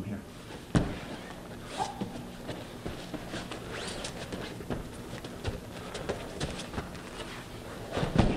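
Scuffing, shuffling and thuds of two grapplers moving on foam mats, with a sharp thump just under a second in and scattered knocks and rustles after.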